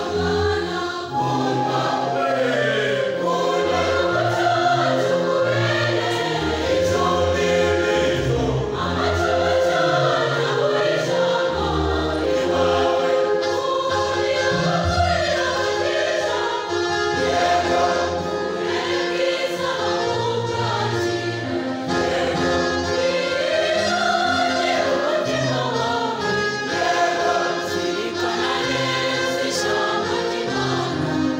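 A large church choir singing a hymn in several parts, with held chords and a moving melody, steady in loudness.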